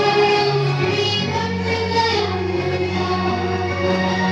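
A song sung by a group of voices over steady, sustained instrumental accompaniment, at a constant level.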